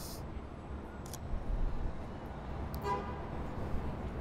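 Steady low street traffic noise, with one short car horn toot just under three seconds in.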